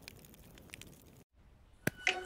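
Faint crackling of a cartoon campfire, a scatter of soft ticks over quiet ambience. The sound drops out completely a little past halfway, then a single sharp click comes near the end.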